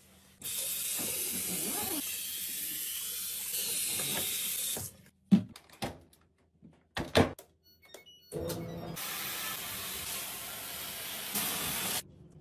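A bathroom sink faucet running for about four seconds, then a few sharp clicks and knocks, then another steady rush of noise near the end.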